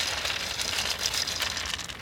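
Young raccoon eating dry kibble from a handheld bowl: a dense run of small crackly crunches and rattles of the hard pellets, easing off near the end.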